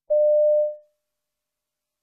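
Electronic cue tone: one steady beep at a single mid pitch, held about half a second and then fading away, the signal that marks the start of each piece in a recorded listening exam.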